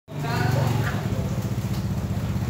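Motor scooter engine idling steadily, with voices over it in the first second.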